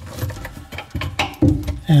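A few light clicks and knocks of a screwdriver being fitted into the hole of a faucet mounting-nut wrench and worked against the retaining nut under a sink, with a man's voice starting near the end.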